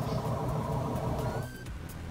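Background music: steady held tones over a low rumble, which break off about one and a half seconds in, followed by a short rising tone.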